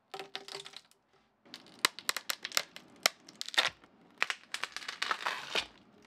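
Acrylic sheets being pried and peeled off a block of cured epoxy resin: a few crackles, then from about a second and a half in a dense run of sharp cracks and crackling.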